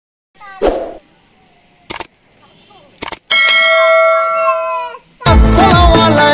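Added sound effects: a short falling-pitch sound, a few sharp clicks, then a ringing chime-like chord held for nearly two seconds that bends down in pitch as it fades. Music starts loudly just after five seconds in.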